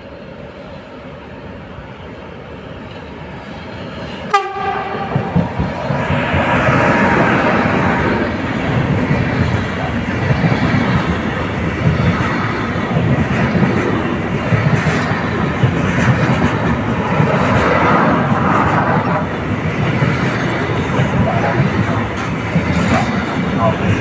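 An electric freight locomotive, a Siemens Vectron, approaches and gives one short horn blast about four seconds in. Its intermodal train of trailer-carrying wagons then rolls past with steady wheel-and-rail rumble and clickety-clack, with faint wheel squeal near the end.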